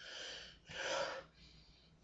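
A man's breathing between sentences: a soft breath, then a louder, longer one about a second in.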